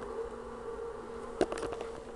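Steady electrical hum, a low buzz with a higher tone above it, from the powered-up desktop CNC router's control electronics, idle with its spindle off. A few light knocks about one and a half seconds in.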